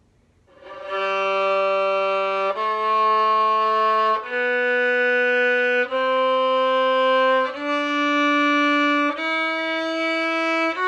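Violin playing a slow ascending G major scale from the open G string, one long bowed note per step of about a second and a half: G, A, B, C, D, E.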